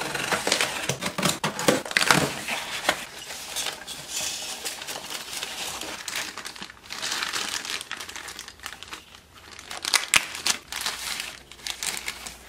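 Box cutter slitting the packing tape on a cardboard shipping box, then the crinkle of plastic wrapping as a packaged plastic model lumber load is lifted out and handled. The sound is a steady crackle dotted with sharp ticks, with a quieter spell after the middle.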